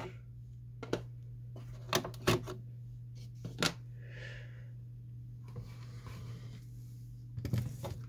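Sharp plastic clicks as Epson 220 ink cartridges are pulled one after another from the printhead carriage, about five in the first four seconds, followed by a brief soft rustle and a few more knocks near the end.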